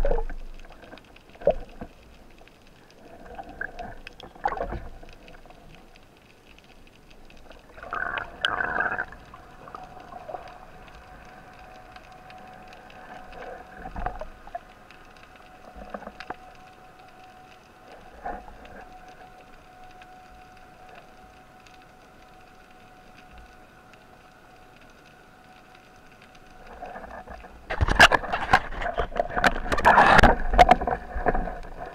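Underwater sound through a camera housing on a speargun: scattered knocks and scrapes as the diver handles the gun and a caught fish, over a faint steady hum. Near the end a loud crackling rush of water noise sets in as the diver moves off.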